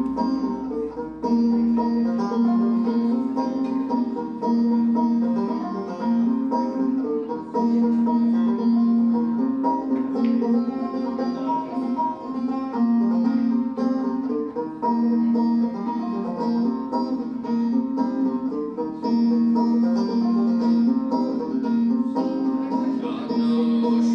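Solo banjo playing an old-time tune instrumentally, plucked notes over a low note that keeps returning.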